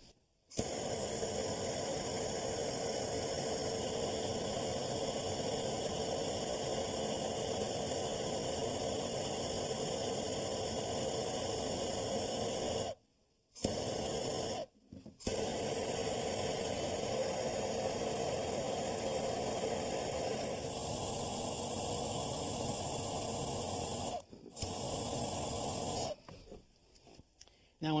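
Plumbing torch hissing steadily as it heats a copper tee fitting to sweat-solder it into a copper water line. The hiss runs in long even stretches, broken by short pauses about halfway through and again near the end.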